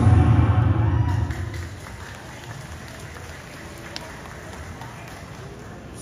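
Stage dance music ending, fading out over the first two seconds, followed by a hall audience applauding.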